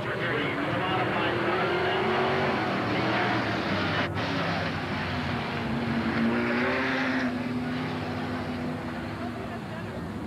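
Engines of several dirt-track modified race cars running as the field circles the track, the pitch rising and falling as the cars go past and throttle up.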